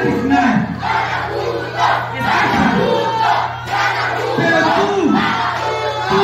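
A man shouting into a handheld microphone over a public-address system in a series of drawn-out, falling calls, with crowd noise around him.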